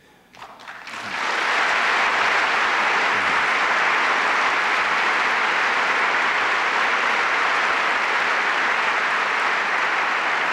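A large hall audience applauding, building up over the first second into steady, sustained clapping.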